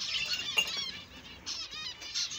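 A colony of zebra finches calling: many short, nasal, beeping calls overlapping, with a brief lull about halfway through before the calls pick up again.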